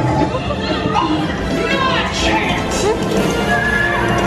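Dark-ride show soundtrack playing loudly: music with cartoon character voices and a horse whinnying.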